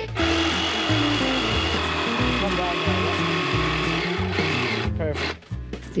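DeWalt jigsaw cutting through a wooden board, running steadily for about four seconds and then stopping. Background music underneath.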